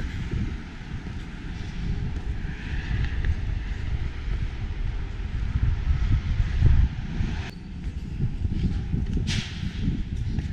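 Wind buffeting the camera microphone in an uneven low rumble, with road traffic behind it and a short hiss about nine seconds in.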